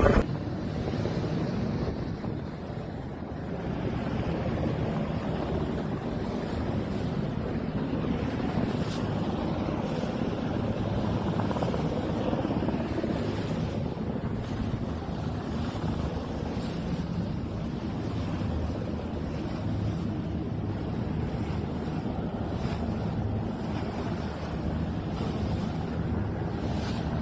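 Wind buffeting the microphone over the wash of sea water, as from a small boat out on open water. A steady low rumble runs underneath.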